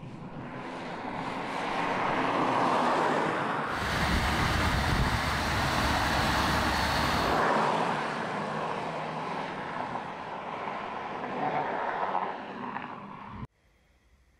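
Opel Astra Sports Tourer estate car driving past on a road: engine and tyre noise swells as it approaches, is loudest with a low rumble as it goes by a few seconds in, then fades as it drives away. The sound cuts off suddenly near the end.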